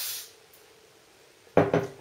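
Short hiss of an aerosol hairspray can (Schwarzkopf got2b volume spray) being sprayed into the hair, lasting about half a second, followed about a second and a half in by a short, loud clatter.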